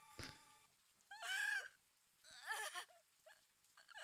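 Two short, faint, wavering whimpers from a man crying, a little over a second apart.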